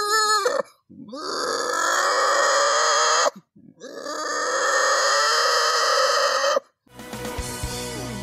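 A boy mimicking an animal call with his voice through hands cupped over his mouth and nose: two long, harsh calls of about two and a half seconds each, separated by a short pause.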